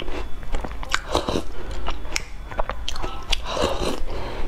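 Chewing and biting a mouthful of walnut shortbread cookie in black bean and black sesame paste, with irregular sharp clicks and wet mouth sounds.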